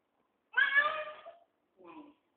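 A high-pitched cry about a second long, starting half a second in, then a short faint sound near the end.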